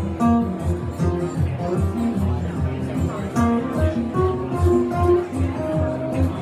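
Two acoustic guitars played together in a live song, a steady strummed rhythm with picked melody notes over it.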